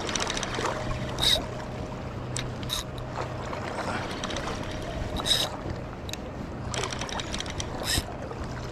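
Daiwa Saltist spinning reel being cranked against a freshly hooked fish, with a few short sharp ticks and a steady low hum underneath.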